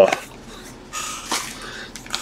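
Foil trading-card pack torn open and its wrapper crinkled as the cards are slid out: quiet rustling with a few small ticks.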